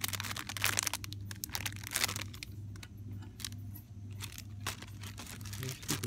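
Crinkling and rustling of cellophane-wrapped party-supply packages being handled, in sharp crackles that are densest in the first second and again about two seconds in. A steady low hum runs underneath.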